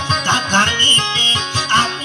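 Amplified acoustic guitar accompaniment in a steady, quick plucked rhythm, with a wavering melody line over it.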